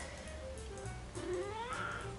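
A domestic cat giving one short rising meow in the second half, over soft background music.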